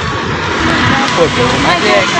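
Busy city street traffic: vehicle engines running and passing, with people's voices.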